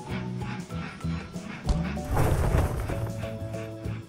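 Cheerful background music, with a loud crash about two seconds in as a plastic toy train engine tips over off its track.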